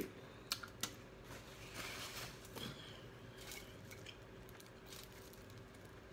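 Quiet eating sounds while picking at and chewing fried chicken wings: a few small sharp clicks and a soft rustling chew about two seconds in.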